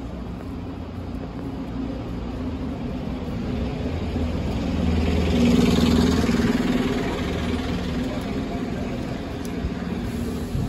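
City bus driving past close by: its engine hum swells to its loudest about halfway through, then fades away.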